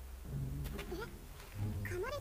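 Quiet Japanese anime dialogue playing in the background: a character's short spoken line, then another voice starting a reply near the end, over a low steady hum.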